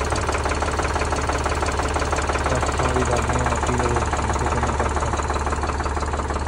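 Farm tractor's diesel engine idling close by, running steadily with a fast, even beat.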